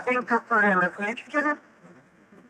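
Speech: a person talking, stopping about three quarters of the way through.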